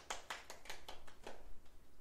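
Fingers scratching hair close to a clip-on microphone: a quick run of short scratchy strokes, about six a second, that stops about one and a half seconds in.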